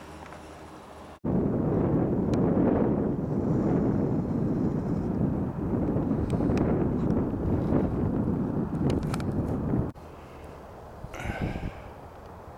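Wind blowing hard across the camera microphone, a loud, gusty rush that starts suddenly about a second in and cuts off just as suddenly near ten seconds. Before it, a fainter steady hum.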